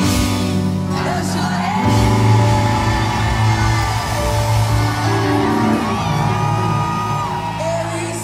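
Live band music with a woman singing lead over a steady bass line and drums, with whoops and shouts mixed in.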